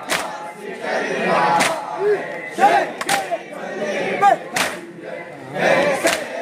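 A group of mourners performing matam, beating their chests with their hands in unison, the slaps landing together about every one and a half seconds. Between the strikes a crowd of men chant and call out.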